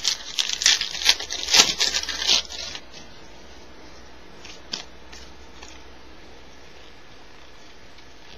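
A foil baseball-card pack wrapper torn open and crinkled for the first three seconds or so, followed by a few faint ticks a little past halfway.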